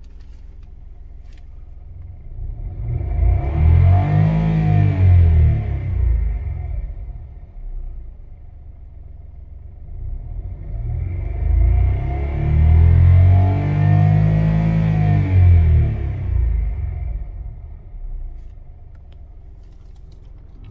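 A 2017 Kia Morning (JA)'s engine idling in Park and revved twice: each rev rises and falls back to idle over a few seconds, and the second is held longer.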